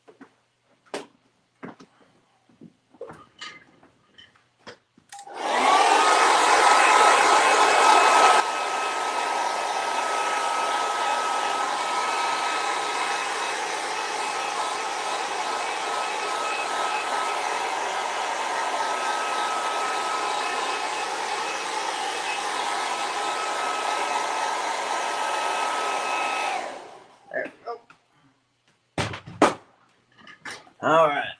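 Hand-held hair dryer switched on about five seconds in: a steady rush of air with a steady whine, loudest for the first three seconds and then a little quieter, until it is switched off near the end. A few small taps and clicks come before it starts and after it stops.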